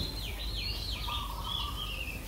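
A small bird chirping: a quick run of high, falling chirps, about four a second, then a few longer, steadier notes.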